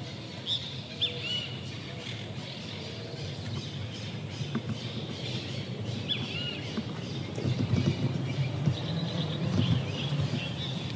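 Birds chirping a few times, short high calls about a second in, around six seconds and near the end, over a steady low background rumble of outdoor ambience.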